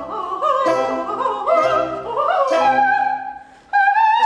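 Female operatic voice singing with orchestral accompaniment: quick runs of rising and falling notes, then after a brief break near the end she starts a long held high note with wide vibrato.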